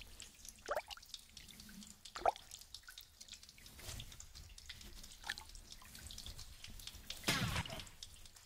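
Water dripping in a cave: scattered single drops falling at irregular intervals, with a brief louder burst of noise near the end.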